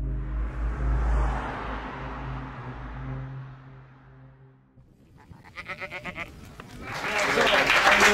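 Ambient intro music with a low drone and a swelling hiss fades out over the first four seconds. About five seconds in, a few people start clapping, building into audience applause with voices near the end.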